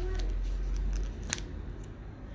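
A low rumble with a few light clicks, the sharpest about a second and a half in, typical of handling noise.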